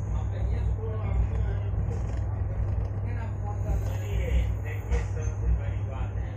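Low, steady rumble of a slowly moving vehicle, with voices of people talking around it.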